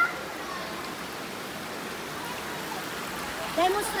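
Shallow river water running over rocks, a steady rushing hiss.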